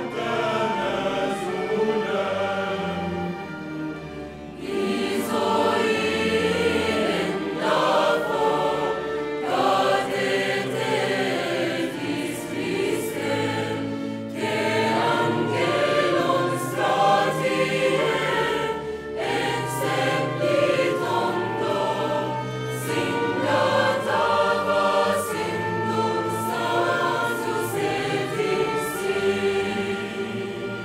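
Mixed choir singing a sacred choral piece, accompanied by a chamber orchestra of violins, cello, double bass and woodwinds. The music eases briefly about four seconds in, then swells again and continues.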